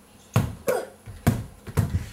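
A small ball bouncing on a hardwood floor: about four separate knocks, irregularly spaced, as a toddler's bounce-and-catch is missed.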